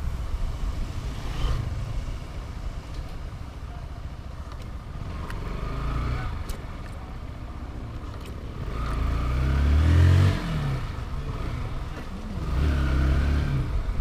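Motorcycle engine pulling along a street. It runs up in pitch to its loudest about ten seconds in, then drops off suddenly as the throttle is eased, and climbs again near the end. A low wind rumble on the microphone runs underneath.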